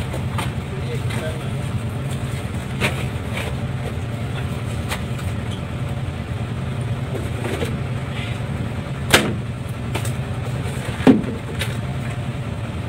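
A fishing boat's engine running steadily with a low drone, over which come a few sharp knocks, the loudest two in the second half.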